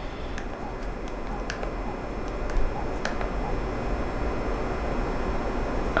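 Steady low room noise with a few faint, short clicks scattered through it.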